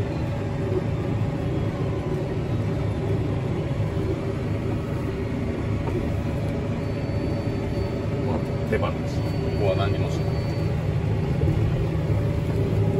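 CLAAS tractor running steadily under load on auto cruise, a deep, even drone inside the cab, swelling slightly in the second half.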